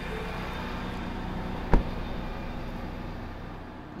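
A Ford F550 truck's engine running steadily at its PTO-raised RPM to drive the underbody generator, heard from inside the cab. About two seconds in, a single loud thump: the driver's door shutting.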